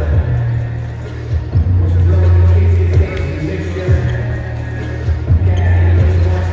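Loud music with a heavy, steady bass fills the hall, and basketballs bounce on the hardwood court in repeated sharp knocks throughout.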